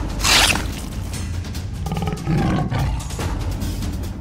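Background music with animated big-cat fight sound effects: a short noisy burst just after the start, then a big-cat roar about two seconds in, lasting under a second.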